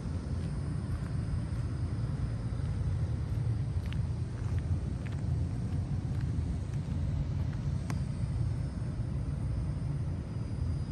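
Steady low outdoor rumble with a few faint ticks.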